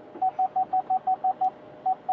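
A car's electronic warning beeper: short beeps at one pitch, about five a second in an uneven run, then a pause and a couple more near the end.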